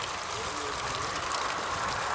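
Faint, distant talking over a steady hiss of outdoor background noise.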